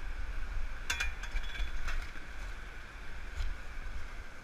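Metal digging shovel and loaded bucket clinking as they are carried over loose river rocks: one sharp metallic clink about a second in, then a few lighter knocks, over a steady low rumble.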